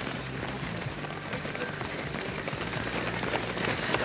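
Footsteps of many runners on a paved road, a dense, uneven patter of shoe strikes that grows louder near the end as the pack comes closer.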